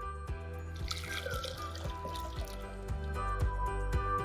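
Soup poured from a plastic measuring jug into a plastic blender jar, a splashing pour lasting about two seconds, under background music.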